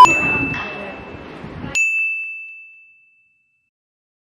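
Two bell-like chime sound effects added in the edit. One ding at the start fades over about a second and a half with a light hiss, and a second ding a little under two seconds in rings out over about two seconds.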